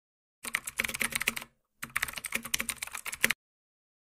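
Keyboard typing: two bursts of quick, rapid clicks, each a little over a second long, separated by a short gap of dead silence.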